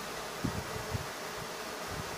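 Steady background hiss with a faint buzz, broken by two soft low thumps about half a second and a second in.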